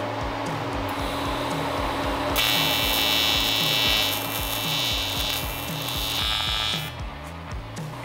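TIG welder arc on an aluminium radiator fill neck: a steady high buzz that starts about two and a half seconds in and stops about a second before the end. The metal is a cheap alloy that welds poorly, which the welder calls Chinese pot metal, like melting old soda cans together.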